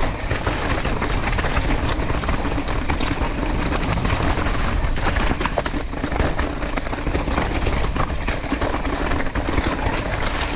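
Mountain bike rolling down a rocky downhill trail: tyres crunching over loose rocks and the bike rattling with many small knocks, over a steady low wind rumble on the camera microphone.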